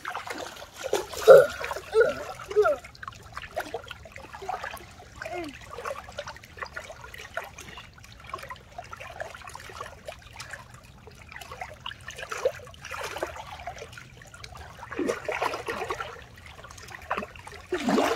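Shallow water splashing and trickling as a soaked plush puppet is dipped and dragged through it by hand, in irregular splashes that are loudest about a second in.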